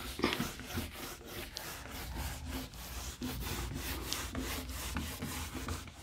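Handheld whiteboard eraser rubbing back and forth across a whiteboard, wiping off marker writing in quick, repeated strokes.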